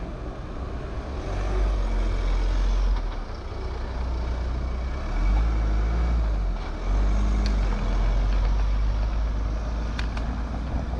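Low, uneven rumble of wind buffeting the microphone of a camera on a moving bicycle, over tyre and road noise. It gets louder about a second in and drops back briefly a few times.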